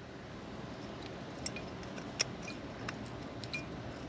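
A few faint, scattered clicks as a broken metal honeycomb jet-ski exhaust filter is picked up and handled, over a low, steady background.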